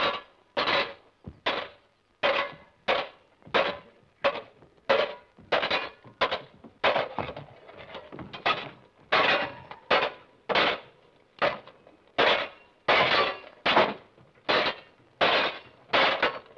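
Swords clashing in a duel: a long, fairly regular run of sharp ringing clashes, about one and a half a second.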